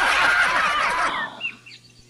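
A dense chorus of poultry-like calls, like a flock of chickens clucking, fading out a little after a second in, then a few short chirps.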